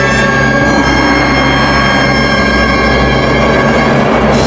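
Chinese traditional orchestra, with trumpets playing, holding a loud sustained chord.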